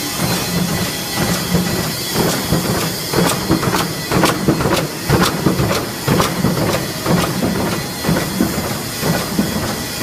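An expanded metal machine running: a steady mechanical hum with a regular pulsing beat from its repeated strokes, and sharp metallic clicks, thickest in the middle seconds.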